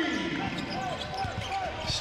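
Basketball game sound in an arena: a ball bouncing on the court under a steady murmur of crowd and faint voices.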